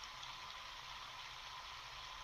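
Faint, steady hiss with a low hum underneath: the background noise of a home recording, with no distinct event.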